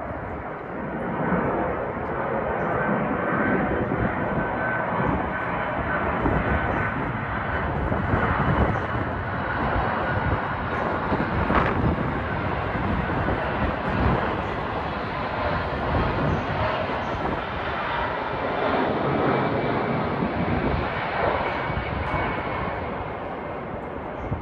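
Airliner flying overhead: a steady rumble of jet engine noise, easing slightly near the end.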